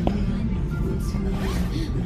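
Store background music over a steady low hum, with one short rustle or scrape at the very start.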